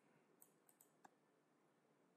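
Near silence with a few faint computer mouse clicks, about half a second to a second in.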